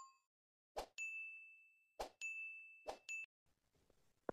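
Subscribe-and-bell animation sound effect: three times a click followed at once by a short, high bell ding, about a second apart.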